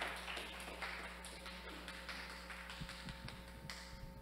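Quiet audience applause: faint scattered taps and rustling that thin out toward the end. Most of the audience is clapping silently by waving raised hands.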